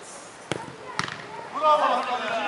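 Two sharp thuds of a football being kicked, about half a second apart, followed by players shouting.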